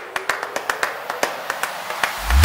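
Channel intro sting: a quick, uneven run of sharp clap-like clicks, about six or seven a second, over a hiss that builds.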